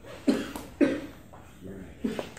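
Chalkboard eraser rubbing across a blackboard in quick strokes, a short scrubbing swish about every half second, the two loudest in the first second.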